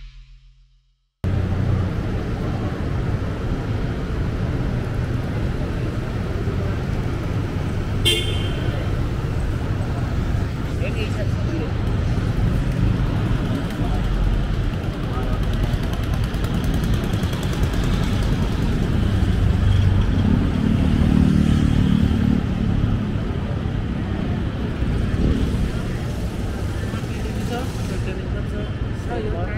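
Busy city street ambience at night: traffic running past with voices in the background, cutting in after about a second of silence. A vehicle horn toots briefly about eight seconds in, and a passing engine grows louder around twenty seconds in.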